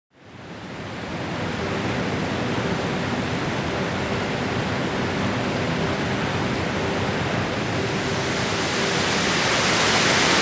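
Water overflowing the Penygarreg Dam and pouring down its stone face as a steady rush. It fades in over the first second and grows louder and brighter near the end.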